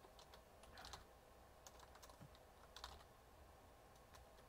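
Near silence: room tone with a few faint, scattered clicks of a computer keyboard and mouse being worked.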